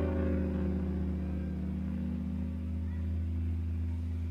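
A guitar's final chord of the song ringing out, held steadily and fading only slightly.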